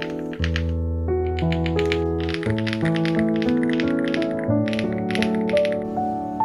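Typing on a Chilkey ND75 mechanical keyboard: quick runs of poppy keystrokes over soft background music.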